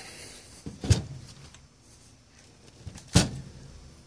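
Two knocks from the Onkyo TX-26 receiver's metal chassis as it is turned over and set down on the bench, about two seconds apart, the second one louder.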